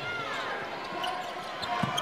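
A basketball being dribbled on a hardwood court, with thuds of the ball near the end, over the murmur of voices in an arena.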